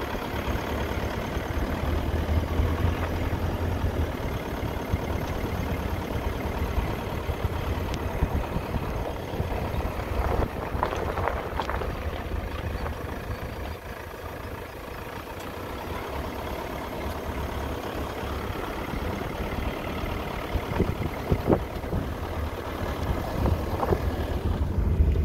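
Motor vehicle driving along: steady low engine and road rumble, with a few short rattles or knocks around the middle and near the end.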